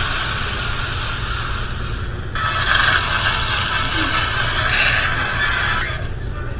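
Car driving away in a film soundtrack played through a TV speaker: a steady hiss-like noise over a low hum, changing abruptly to a different steady noise a little over two seconds in.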